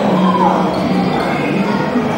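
Indoor sports-hall hubbub from dodgeball play: players' voices calling out, one falling call in the first half-second, over dodgeballs bouncing on the wooden court floor.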